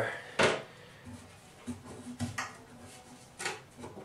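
Rubber bathtub drain gaskets being handled over the tub drain: a few light, scattered knocks and rubs of fingers and rubber against the tub and drain fitting, with one short, sharper noise just under half a second in.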